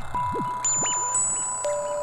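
VCV Rack software modular synthesizer playing a melodic drone: clear, bell-like held tones enter one after another at different pitches, with a wavering tone sliding up and down beneath them.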